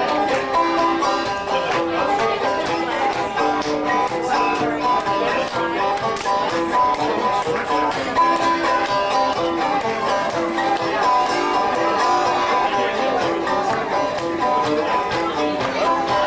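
Banjo played solo in an old-time style: a brisk tune picked in a quick, steady rhythm with a clear melody line.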